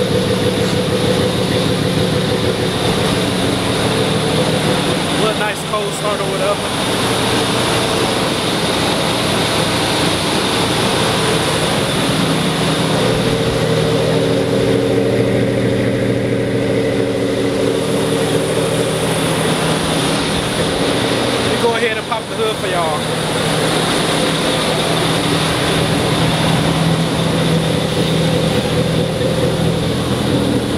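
1986 Chevrolet Caprice engine idling steadily through a cat-back straight-pipe exhaust with flat tips.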